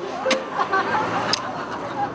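Steady rush of road traffic by a street, with faint voices under it and two short clicks.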